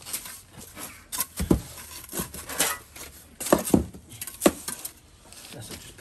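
Steel trowel scraping and clinking against a galvanised metal mixing board as mortar is scooped up, a run of separate sharp scrapes and knocks, loudest a little past the middle.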